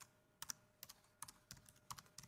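Faint typing on a computer keyboard: a word entered letter by letter, about two or three keystrokes a second.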